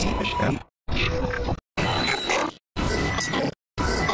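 Sped-up, distorted audio chopped into short chunks just under a second long, each cut off abruptly by a brief silence, repeating about once a second.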